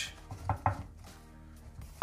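Soaked, crumpled baking paper being pressed down over peppers on a ceramic tray: two brief rustles or taps about half a second in, with faint background music.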